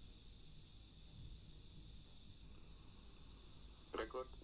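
Near silence: faint room tone with a steady high hiss.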